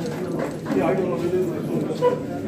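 Indistinct voices of several people talking in a room, with no clear words.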